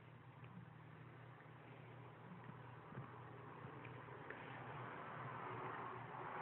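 Quiet room tone with a few faint clicks as a hand handles and taps a touchscreen smartphone.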